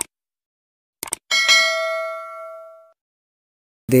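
Subscribe-button animation sound effect: a couple of quick clicks, then a single notification bell ding that rings and fades out over about a second and a half.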